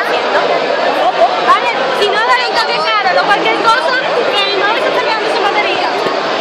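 Crowd chatter: many voices talking at once, steady throughout.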